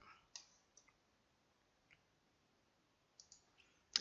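Near silence with a few faint computer mouse clicks, the clearest about a third of a second in, as points are picked on screen.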